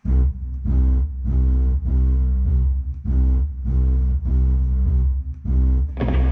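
Loud guitar-and-bass music starting suddenly, with heavy bass and a chord struck again roughly twice a second.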